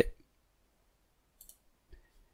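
Computer mouse button clicking: a short double click about one and a half seconds in, then a fainter tick near the end.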